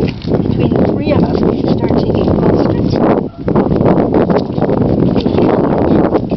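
Hand blades scraping bark off a green ash log: a busy run of rough, rasping strokes, several people working at once, with a short pause a little over three seconds in.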